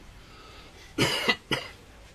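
A man coughing: two coughs about a second in, half a second apart, the second shorter.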